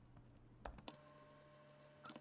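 Near silence with two faint, short computer clicks about two-thirds of a second and just under a second in, from mouse or keyboard use.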